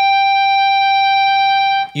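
Electric guitar's fifth-fret natural harmonic on the third (G) string, ringing as a real high, piercing tone held at one steady pitch and cut off near the end.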